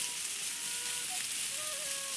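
Cicadas droning in the forest canopy as a steady high-pitched hiss, with a soft flute-like melody of held notes over it.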